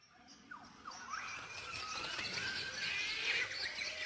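Several birds chirping and whistling in many short notes and pitch glides, fading in from silence.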